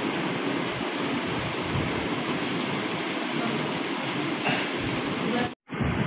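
Steady, indistinct hubbub of many voices and room noise in a crowded room, breaking off to silence for a moment near the end.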